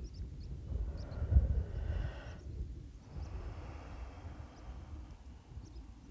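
Wind buffeting the microphone on an open hilltop: an uneven low rumble, with two longer gusts of rushing noise about a second in and again around three seconds in.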